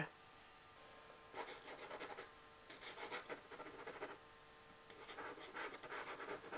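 Soft pastel stick rubbing and scratching across pastel paper in three spells of short strokes, faint.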